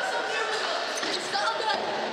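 Indistinct voices and scattered knocks echoing in a large hard-walled hall.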